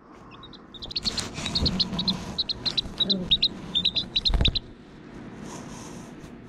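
Young Serama bantam chick peeping: a quick, uneven run of short, high peeps for about four seconds. A bump against the camera comes near the end of the peeping.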